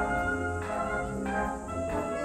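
Military concert band playing: full chords from brass and woodwinds, re-struck about every 0.6 s over a sustained low bass.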